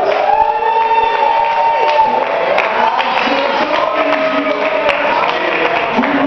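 A live band with electric guitars and a drum kit playing in a room, a long held note standing out for the first two seconds or so, with people talking in the audience.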